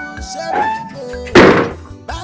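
A door slammed shut once, a single loud thud about a second and a half in, over background music.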